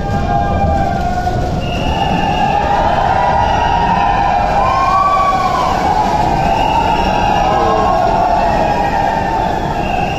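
Tunnel boring machine cutterhead grinding: a loud, steady rumbling noise with irregular, wavering high squeals over it.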